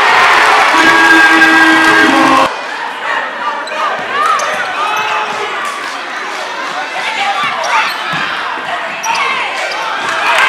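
Loud crowd shouting in a gymnasium for the first two and a half seconds, cut off abruptly. Then the sounds of play: a basketball bouncing on the hardwood court, sneakers squeaking and voices in the stands.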